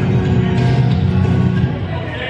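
Music playing, heavy in the low end, stopping near the end.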